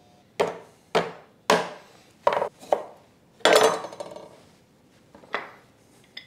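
A kitchen knife knocking on a wooden cutting board as limes are cut in half: about eight separate sharp knocks, the loudest about three and a half seconds in.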